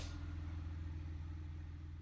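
A car engine idling with a low, rapid, even pulse, slowly fading.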